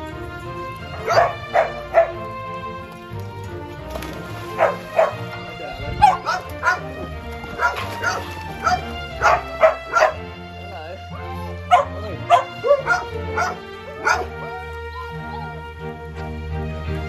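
Dogs barking in many short, sharp barks, some in quick pairs and runs, over steady background music.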